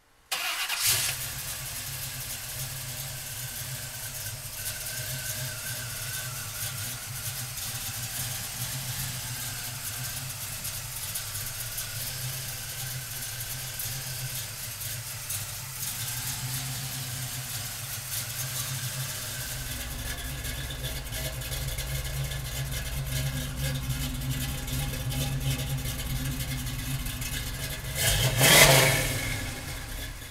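GM 350 cubic-inch crate V8 in a 1973 Chevrolet Camaro Z28 idling steadily. About two seconds before the end the engine note rises and falls, louder for a moment.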